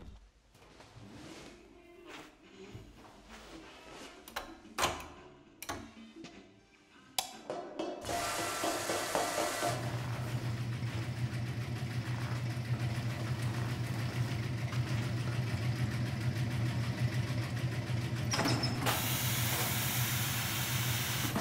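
Scattered soft clicks and knocks, then about eight seconds in laundry pressing machinery starts up with a rushing noise and, from about ten seconds in, a steady low hum. A high steam hiss joins near the end.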